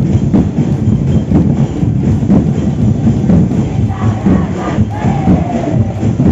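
Street-dance parade music with a steady drumbeat, over crowd noise. A couple of short gliding calls ring out near the end.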